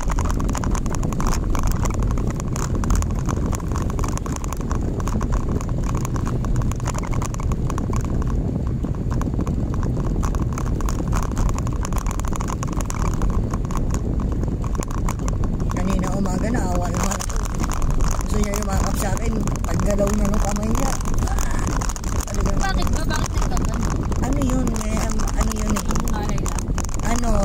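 Steady rumble of a car's engine and tyres heard from inside the cabin while driving. A little past halfway a person's voice joins, without clear words.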